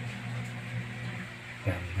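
A steady low hum with faint background hiss, broken by a short spoken word near the end.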